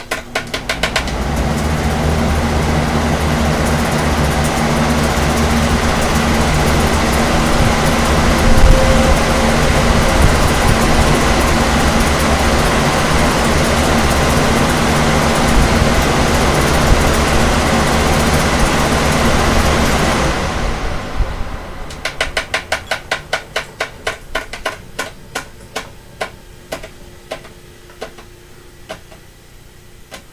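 Four electric fans, a Lasko high-velocity floor fan and Lasko, Pelonis and vintage Holmes box fans, running together on high speed: a steady rush of air over a low motor hum that builds over the first second or two. About twenty seconds in they are switched off and coast down, the rush fading while a regular ticking slows as the blades wind down.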